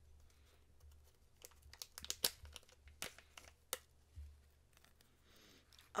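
A plastic tea pouch crinkling and tearing as it is opened and handled, in scattered sharp crackles, loudest about two seconds in. A short sniff near the end.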